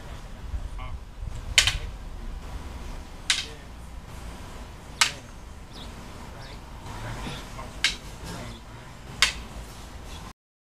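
Rattan escrima sticks clacking together as strikes meet blocks: five sharp wooden knocks spaced one and a half to three seconds apart, the first the loudest.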